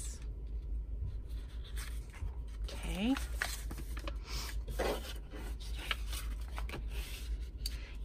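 Paper rustling and rubbing on a tabletop as sheets of scrapbook paper and a paper envelope are handled, slid and pressed down by hand, in short irregular scrapes and crinkles.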